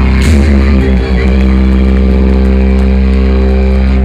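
A live rock band ends a song: a drum and cymbal hit just after the start, then amplified electric guitar and bass hold one loud, steady droning chord that rings on unchanged.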